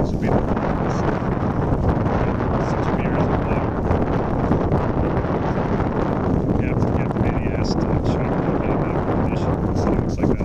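Steady wind buffeting the microphone on a motorboat under way, over the drone of its motor and the rush of the hull through the water.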